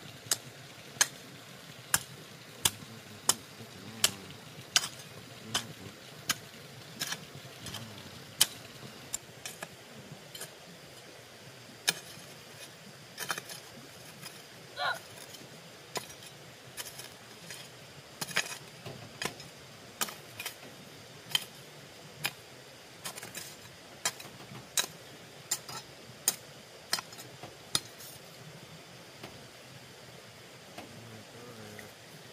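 Metal hoe blade chopping into stony garden soil, a sharp clink with each stroke, about one every three-quarters of a second at first and more irregular later.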